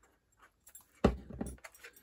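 A knock on the wooden craft tabletop about halfway through, followed by light metallic clinking from bangles and the rustle of cardstock being handled.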